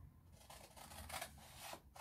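Scissors cutting through a sheet of paper along a pattern line: a faint run of short, soft snips.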